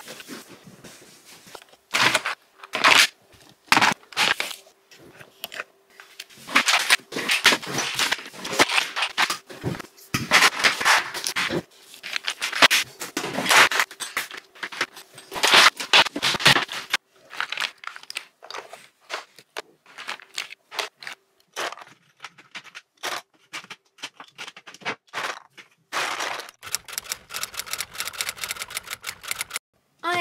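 Hands working on a tabletop, with irregular scraping, rubbing and clattering as a desk is wiped and small plastic pots of nail glitter in acrylic drawers are moved about. The handling comes in busy runs early on and grows sparser in the second half.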